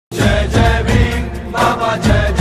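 TV channel intro jingle: music with a heavy bass under a chanted vocal line, starting abruptly.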